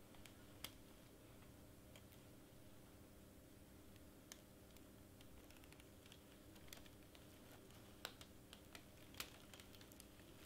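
Near silence with a faint steady hum and a handful of faint, scattered clicks and taps from hands and fingernails working over heat-transfer vinyl and its plastic carrier sheet on a sweatshirt. The sharpest click comes about half a second in.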